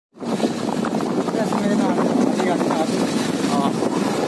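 Voices talking over a steady rushing noise.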